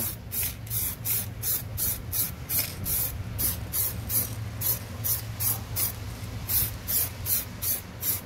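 Aerosol spray can of black car paint sprayed in short repeated bursts, about three a second, over a low steady hum.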